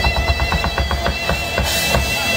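Live rock band: a drummer plays a fast fill on a Tama drum kit, about eight strokes a second, over a sustained electric guitar note. The strokes stop about a second and a half in.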